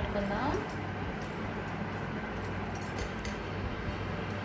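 A hand mixing marinated chicken pieces in a small stainless steel bowl: light clinks against the steel among soft handling sounds, over a steady low hum.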